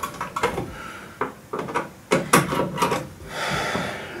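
A boiler's inner cover panel being worked loose and pushed back by hand: several short knocks and clacks, then a scraping rub near the end.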